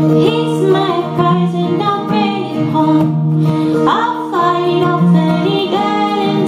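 A woman singing to her own strummed acoustic guitar, performed live.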